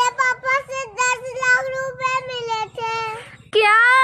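A high-pitched singing voice holds a sung line with wavering, drawn-out notes, breaks briefly, then comes back louder on one held note near the end.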